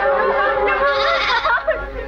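Voices singing long, wavering held notes in a Wixárika (Huichol) peyote dance song.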